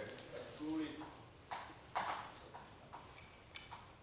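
Chalk tapping and scraping on a blackboard in a handful of short, sharp strokes, the loudest about two seconds in, with indistinct voices murmuring in the background.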